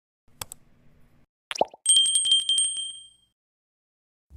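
Subscribe-button animation sound effects: a faint click, then a quick pop, then a bright bell-like ring that fades out over about a second and a half.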